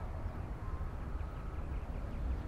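Outdoor lakeside ambience: a low, uneven rumble of wind on the microphone, with a few faint distant bird calls.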